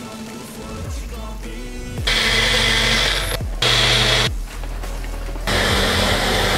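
Magic Bullet blender motor running in several bursts of about a second each, starting about two seconds in, blending a protein shake, with background music underneath.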